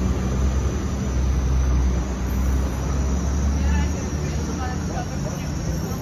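Road traffic on a city street: a steady low rumble of passing vehicles that eases off about four seconds in, with faint voices of people walking nearby.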